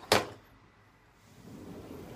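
A single sharp bump or whoosh just after the start, fading within a fraction of a second. After it there is only a faint room hiss.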